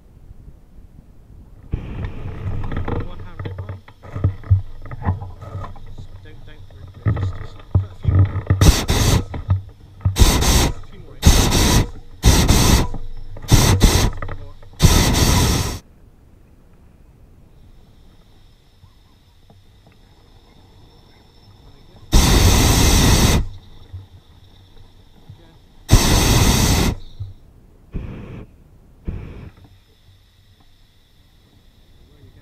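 Hot air balloon propane burner fired in a run of short blasts, then later in two longer blasts of about a second each and two brief ones near the end. A faint steady high whine runs under the quieter stretch in between.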